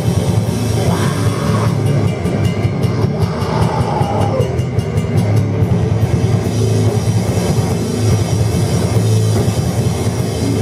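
Sludge metal band playing live at full volume: heavily distorted guitars and bass over drums, with a fast run of drum hits from about two seconds in to the middle.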